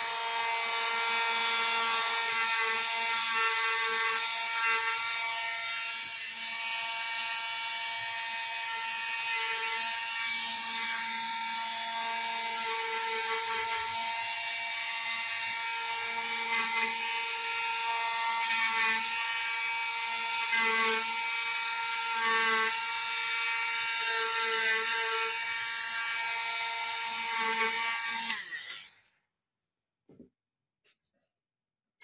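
Small handheld rotary tool with a wire-brush bit running at a steady high-pitched whine. The tone swells in short spells as the brush is pressed against a pinball coil's wire terminal lug. It stops shortly before the end.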